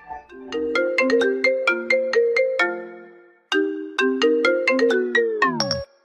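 Short ringtone-style melody of marimba-like notes, played as two quick phrases with a brief gap between them. The second phrase ends with the notes sliding steeply down in pitch.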